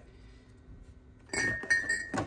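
Glass soda bottles clinking against each other as a hand reaches in among them inside a small fridge, starting about a second and a half in, with a short ringing tone.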